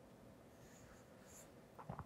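Faint scratch of a stylus drawing across a tablet's glass screen, followed near the end by two short, soft knocks.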